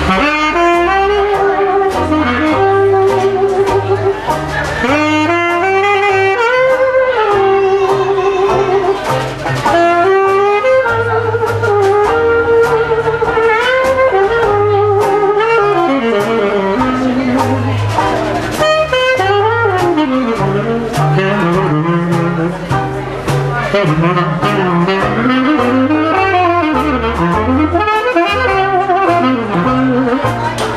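Live jazz: a saxophone playing a moving melodic line over electric bass guitar.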